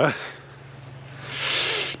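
A soft hiss swells up about a second in and cuts off near the end, when talking resumes.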